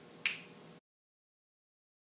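A single sharp finger snap, after which the sound cuts off completely.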